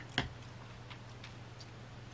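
Quiet room with a low steady hum, one sharp click just after the start, then a few faint ticks while a mouthful of beer is being tasted.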